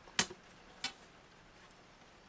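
Two short clicks about two-thirds of a second apart, the first louder, as a steel rule is handled and set down on a cutting mat.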